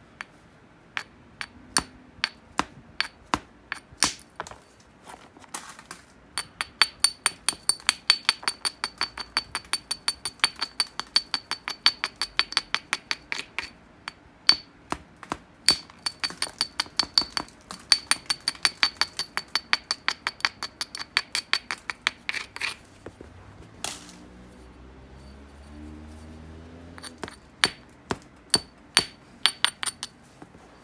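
A small stone abrader worked along the edge of an obsidian biface: a rapid run of sharp, glassy clicks, about four or five a second, as tiny flakes crush off the edge. The edge is being ground and prepared as platforms before the next flakes are struck. The clicks come scattered at first, stop for a few seconds near the end, then start again.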